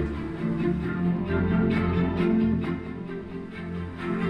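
Music played through four JBL PartyBox speakers (two PartyBox 300s and two PartyBox 100s) at once, with sustained notes. The speakers are slightly out of sync with each other.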